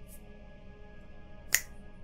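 A single sharp finger snap about one and a half seconds in, with a fainter click at the very start, over a soft, steady ambient music drone.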